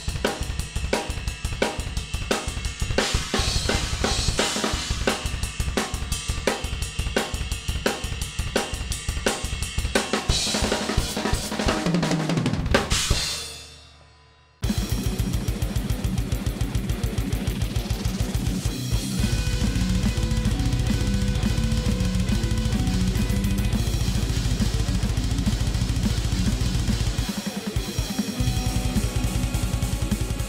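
Drum kit played hard with a rapid double bass drum pedal pattern under snare and cymbals, which dies away with a falling ring about 13 s in. After a brief gap, heavy metal outro music with guitar begins.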